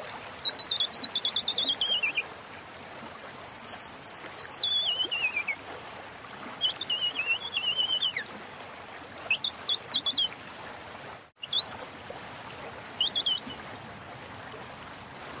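Songbird singing in repeated rapid trilling phrases, each lasting one to two seconds and mostly sliding down in pitch, over a steady hiss like running water. The sound cuts out briefly a little past the middle.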